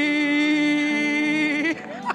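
A woman's amplified voice holds one long, steady, sung-out vowel into a microphone and breaks off about one and a half seconds in. A soft keyboard chord comes in under it about halfway through.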